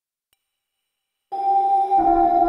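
An Access Virus C synthesizer patch, played through the DSP56300 emulator plugin, begins a held note about a second and a quarter in: several steady pitches sounding together, starting abruptly out of silence.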